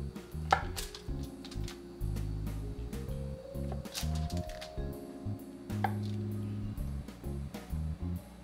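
Chef's knife pressing down through firm set polenta onto foil over a cutting board, a scatter of short sharp taps and clicks. Background music with sustained low notes plays throughout.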